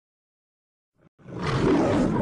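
A lion's roar, a sound effect, starting abruptly out of silence a little over a second in and rough and throaty.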